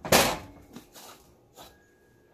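A metal fork set down on the counter beside a glass mixing bowl: one short clatter just after the start, then a couple of faint knocks.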